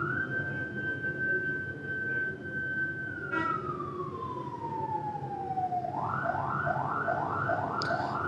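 Emergency vehicle siren in wail mode: one long tone that holds steady, then glides slowly down. About six seconds in it switches to a fast yelp of quick repeated rising sweeps.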